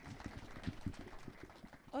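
Faint room noise of a hall, with scattered light clicks and knocks.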